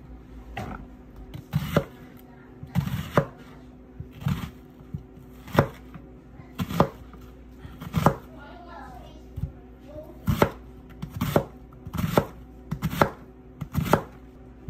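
Chef's knife chopping an onion on a plastic cutting board, the blade knocking the board in separate strokes about once a second.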